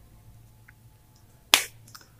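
A whiteboard marker's cap snapped on: one sharp click about one and a half seconds in, over a faint low hum.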